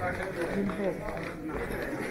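Background voices of passers-by talking, several at once and none clear, with footsteps on a stone floor.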